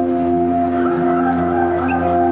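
Live band playing a slow, ambient passage: sustained held chords, with a wavering higher melody line over them in the middle.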